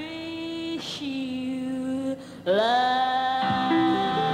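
A woman singing long held notes of a slow ballad with a band backing her. There is a brief breath about a second in, and a new note swoops up into a long hold about two and a half seconds in.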